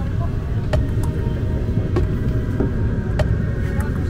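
Steady low rumble inside the cabin of an Embraer 190-E2 airliner parked at the gate, with scattered light clicks.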